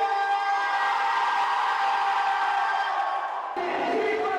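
A single voice holding one long, drawn-out call on a steady pitch, sliding down in pitch in its last second.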